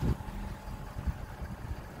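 Low, uneven rumble with a faint steady hum underneath: vehicle background noise.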